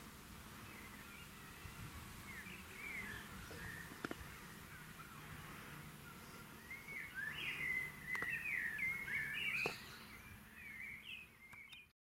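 Small birds chirping and twittering, busier and louder in the second half, with a few sharp clicks and a faint steady low hum underneath; the sound cuts off suddenly at the end.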